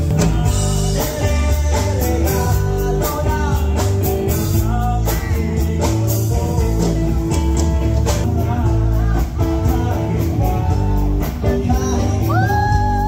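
A live rock band playing loudly, with electric guitar, a drum kit and a male lead singer.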